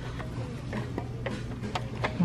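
Small metal-lidded candle tins clicking and tapping lightly as they are handled and shifted on a store shelf, several separate ticks over a low steady hum.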